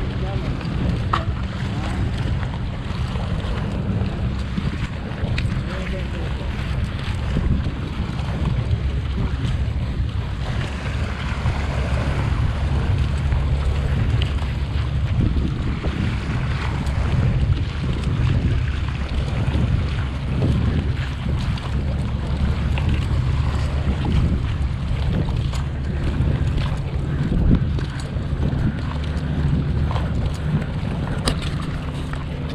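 Wind buffeting the microphone: a steady low rumble that runs on without a break.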